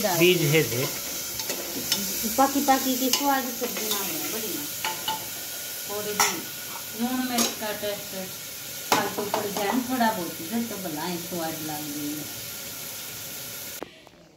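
Oil tempered with cumin and asafoetida sizzling steadily in a pan as diced cucumber is stirred in for a sabzi, with a few metal clinks of the spoon against the pan. The sizzle cuts off suddenly near the end.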